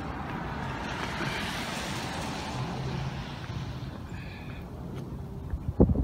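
A car passing on the street, its noise swelling and then fading away. A brief high tone sounds just after the car fades, and a sharp knock comes near the end.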